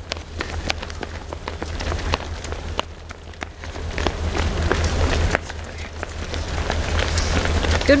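Footfalls of a large pack of road runners on asphalt as they pass close by: many irregular light slaps of running shoes, over a steady low rumble and scattered voices.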